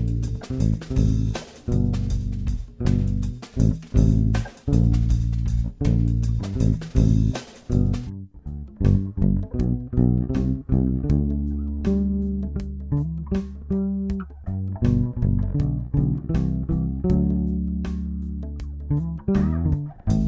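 Electric bass guitar playing a groove-based bass line of repeated plucked, sustained low notes within a multitrack arrangement, with a light percussion track ticking in time. The higher sounds thin out about eight seconds in, leaving mostly the bass.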